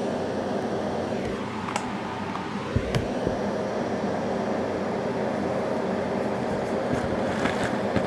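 Steady fan-like mechanical hum and hiss, with two faint clicks and a low bump of camera handling between about two and three seconds in.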